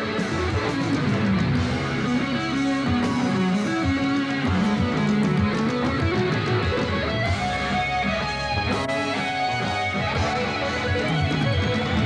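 Live electric guitar solo over a rock band backing: runs of single notes and pitch bends over a steady bass line.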